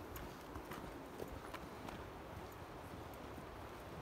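Faint, irregular light taps over a quiet outdoor background.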